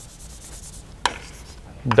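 Chalk writing on a blackboard: a scratchy rubbing through the first second, then a single sharp tap of the chalk on the board about a second in.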